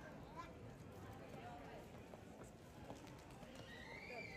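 Faint street ambience of a pedestrian square: indistinct voices of passers-by with scattered sharp clicks, and a short high gliding tone near the end.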